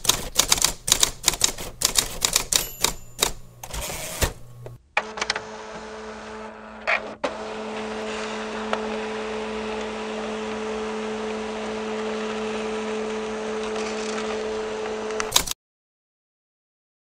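Computer keyboard typing, a quick run of key clicks for about five seconds. Then a dial-up modem connecting: a steady hiss with a low hum that cuts off suddenly near the end once the connection is made.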